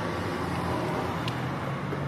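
Road traffic on a city street: a steady hum of a passing car that swells slightly and eases off.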